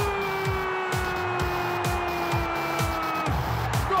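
A football commentator's long, drawn-out cry of "gol", held for about three seconds as its pitch slowly falls, then cutting off. It rides over background music with a steady beat of about two pulses a second.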